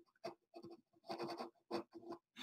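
Pen scratching on paper, faint, in a run of short separate strokes as a word is handwritten.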